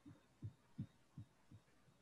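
Five soft, low thumps in quick, even succession, about two and a half a second, the middle two the loudest and the last ones fading, over near silence.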